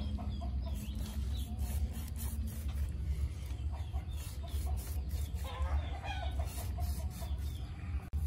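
Chickens clucking, with a louder run of calls about two-thirds of the way through, over short repeated scraping strokes of a cleaver working across a fish on a wooden cutting board.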